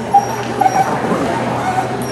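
A dog yipping: a short high yip just after the start, then another burst of yips about half a second later.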